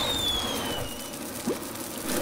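Cartoon sound effect of a sparkler-like fountain of sparks: a hissing shower with a high whistle that glides slowly downward and fades after about a second. It is the comic gag of a character's head blowing its top from overload.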